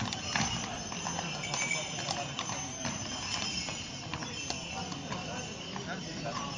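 Horses' shod hooves clip-clopping irregularly on a paved street as a group of mounted horses shifts and steps about, with people talking.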